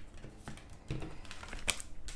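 Light scattered clicks and taps of tarot cards being handled on a tabletop, fingernails and card edges tapping the cards and table, with one sharper click near the end.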